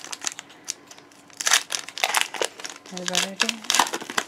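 Foil wrapper of a Pokémon trading-card booster pack crinkling in short, irregular rustles as it is opened by hand, with a brief hum of voice about three seconds in.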